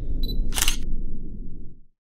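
Logo sting built on a camera sound: a brief high tone, then a camera shutter click about half a second in, over a low rumble that fades out near the end.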